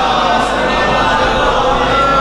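Congregation of men chanting together, many voices blended into one continuous, loud drawn-out vocal sound.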